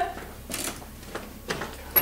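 Footsteps: a few faint separate knocks and scuffs of someone walking across a classroom floor.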